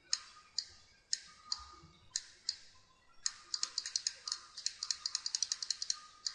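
Sharp clicking of a computer's input controls: single clicks about every half second, then from about three seconds in a fast run of clicks, about five a second.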